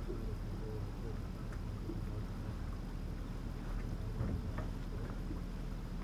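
A few faint metallic clicks and taps as a three-jaw gear puller is adjusted and its hooks are set behind a boat steering wheel, over a steady low outdoor rumble.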